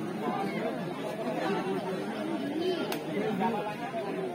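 Spectators chattering, several voices overlapping. There is one sharp click about three seconds in.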